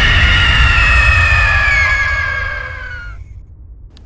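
Loud horror jump-scare sound effect: a shriek of several high tones sinking slowly in pitch over a deep rumble, fading away about three seconds in.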